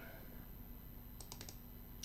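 A few faint, quick taps of computer keyboard keys, clustered a little over a second in, over low steady background noise.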